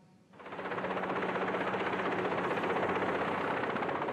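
Westland Wessex military helicopter running close by, its rotor beating fast and evenly; the sound fades in about a third of a second in and then holds steady.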